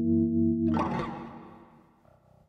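Carvin LB76 six-string electric bass: a sustained note or chord rings, then about two-thirds of a second in there is a brief scratchy scrape across the strings, and the sound dies away over the next second.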